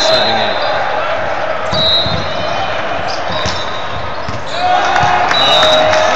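Indoor volleyball rally on a hardwood gym court: sharp thuds of the ball being hit and bouncing, among shoe and player noise, over steady crowd noise and voices.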